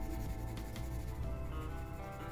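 A 4B graphite drawing pencil shading on paper in short strokes, under quiet background music with held notes.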